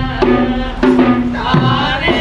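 Traditional Sri Lankan procession music: drums struck in a steady rhythm, each low stroke sliding down in pitch, under a held melody line.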